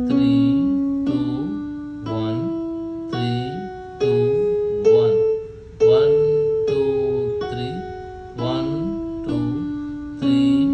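Yamaha electronic keyboard played one note at a time, about a note a second, each note struck and left to ring. The notes climb step by step up the A major scale to the top A, then come back down the scale.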